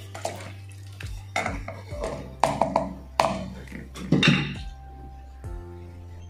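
Wooden spoon stirring dal in an aluminium pressure cooker pot, knocking against the pot several times, over background music that ends in a held chord near the end.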